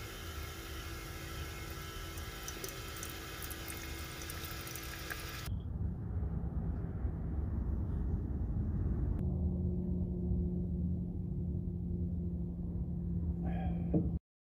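Single-serve coffee brewer dispensing a stream of coffee into a mug, a hissing pour over the machine's steady hum, which cuts off about five seconds in. A low rumble follows, and a steady low hum joins it about nine seconds in.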